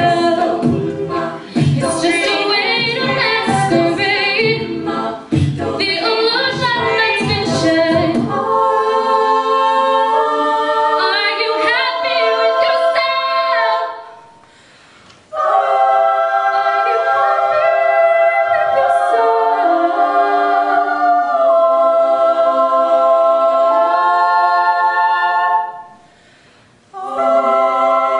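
All-female a cappella group singing close-harmony chords, with vocal percussion beats under the voices for the first eight seconds or so, then held chords. The singing stops briefly twice, about halfway through and again near the end.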